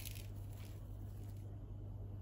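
Quiet room tone with a steady low hum; nothing else stands out.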